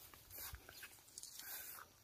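Near silence: faint outdoor background noise with a few very soft ticks.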